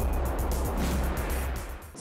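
Electronic bumper music for a TV show's ident: a heavy pulsing bass under a noisy wash, fading out near the end.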